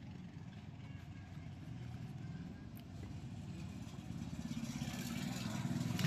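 A vehicle engine running somewhere in the background: a low rumble that slowly grows louder toward the end.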